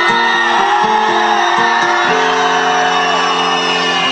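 Loud amplified concert music from a stage sound system, a synthesizer line stepping between held notes over a steady pulse.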